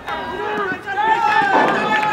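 Several people's voices calling out across a cricket ground, drawn-out shouts overlapping one another.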